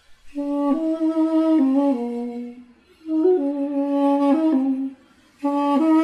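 Armenian duduk, the apricot-wood double-reed pipe, played solo: a slow melody of held notes stepping up and down, in three short phrases with brief breaks between them.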